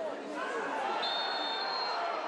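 Stadium crowd murmuring, with a referee's whistle blown in one steady, high blast starting about halfway through, signalling a foul: a penalty for a high boot.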